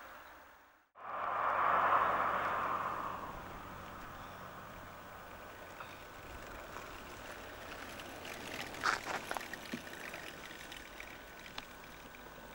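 Outdoor roadside noise: a loud rushing swell that fades away over about three seconds, then a steady hiss with a few faint clicks.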